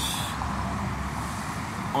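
Street traffic: a steady low engine rumble from road vehicles, with a short hiss right at the start.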